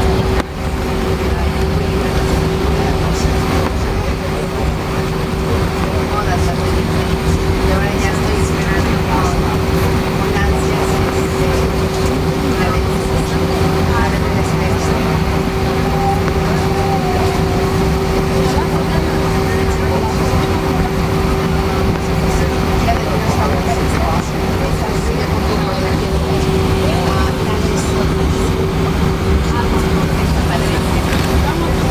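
Cabin noise of a jet airliner taxiing: a steady engine hum with one constant tone over a low rumble.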